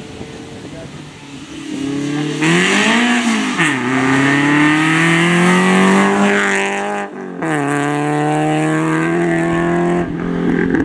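Renault Clio Sport rally car's engine at speed: the revs dip briefly about three seconds in, then climb steadily as it accelerates close past. After a sudden break near seven seconds, an engine holds a steady note.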